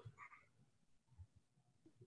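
Near silence on the call's audio, with a few faint, brief blips.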